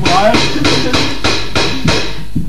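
Drum kit played in a steady beat of about five hits a second.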